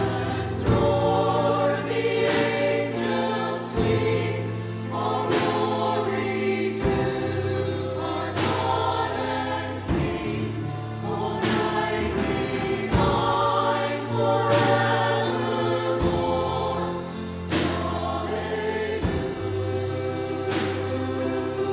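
A mixed church choir singing a Christmas song with piano and keyboard accompaniment, over sharp percussive hits that recur about once a second.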